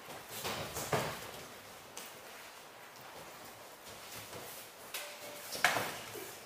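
Two fighters sparring barefoot on gym mats: two short bursts of scuffing and thuds from footwork and blows, about a second in and again near the end, with a couple of single knocks between.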